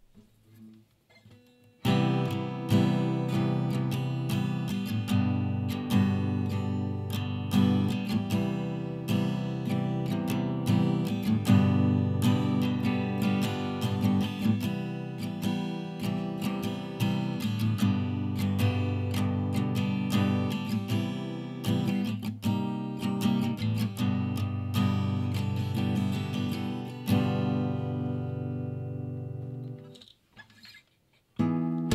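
Acoustic guitar playing chords, close-miked on a dynamic microphone, starting about two seconds in and ending with a last chord that rings out near the end.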